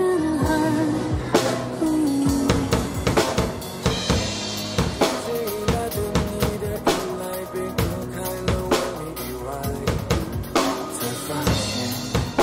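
A Cadeson acoustic drum kit played live, with bass drum, snare and cymbal strikes, along to a recorded Mandarin pop song with singing played back through a loudspeaker. The drumming grows busier about a second and a half in.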